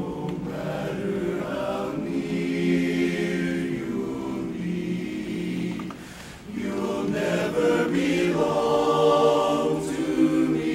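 Men's barbershop chorus singing a cappella in close four-part harmony, holding sustained chords. About six seconds in the sound dips briefly between phrases, then the chorus swells louder.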